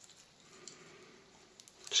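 Faint rustling of PTFE thread-seal tape being wound by gloved hands around a metal airgun regulator body, with a small tick about two-thirds of a second in.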